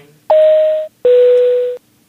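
Two-note electronic chime in the manner of an airliner cabin PA chime: a higher tone, then a lower one, each held for well under a second over a hiss.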